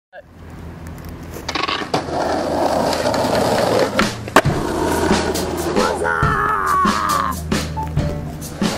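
Skateboard wheels rolling on asphalt with sharp clacks of the board, the loudest about four and a half seconds in, over music.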